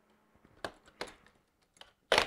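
A few faint, short clicks from the adjustment screw on the stem of an Everlast Hyperflex Strike reflex bag being unscrewed by hand.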